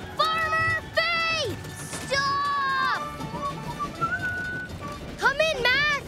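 Cartoon voices yelling in several drawn-out cries of alarm over background music, the last one wavering.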